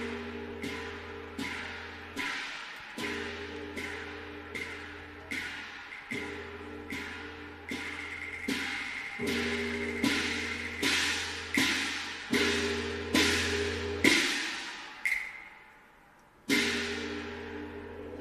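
Cantonese opera percussion: sharp clapper or wood-block strikes with small-gong ringing, about one every 0.7 s over a steady low tone. The beat quickens, breaks off briefly, and ends with one loud strike near the end.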